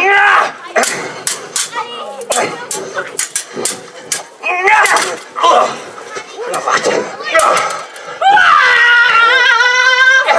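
Actors' shouted cries and exclamations with a quick string of sharp knocks in the first few seconds, then one long, loud, wavering yell near the end.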